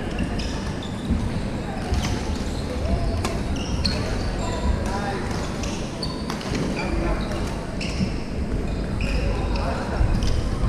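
Badminton hall ambience: sneakers squeaking on the wooden court again and again, a few sharp racket hits on shuttlecocks, and indistinct chatter from players in a large hall.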